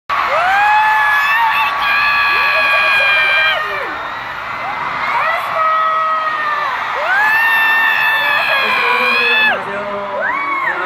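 Concert crowd screaming: many high-pitched, overlapping voices, each scream held for a second or two, coming in two loud waves with a dip around four seconds in.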